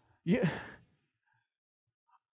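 A man says one drawn-out, breathy 'you' that falls in pitch and lasts about half a second. Near silence follows.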